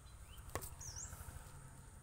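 A single sharp click about half a second in, from hands handling the woody trunks of a bare-root tree stock, over faint background. A bird's high chirp repeats about once a second.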